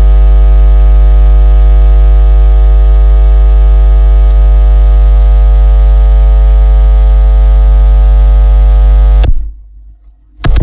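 Loud, steady, deep electrical buzz that cuts off suddenly about nine seconds in.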